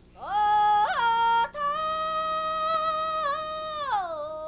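A single voice singing unaccompanied. It slides up into a note, flips briefly up to a much higher note about a second in and back down, then holds one long, steady note until near the end.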